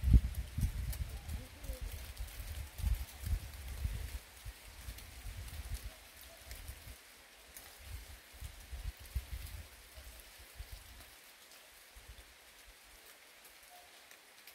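Dry fallen leaves rustling and crackling in a late-autumn forest, a light pattering like rain. Low, irregular thumps sit under it for the first ten seconds or so, then the sound thins out.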